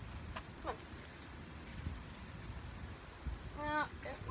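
Mostly a low outdoor rumble with a few soft thumps, then a woman's voice in a short call near the end.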